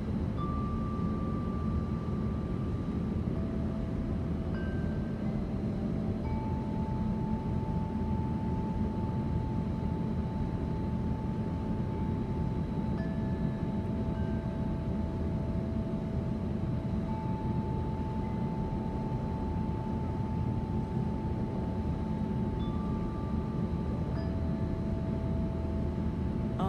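Steady low rumble of outdoor city background noise, with soft chime-like tones at several pitches held for several seconds each, coming and going and overlapping over it.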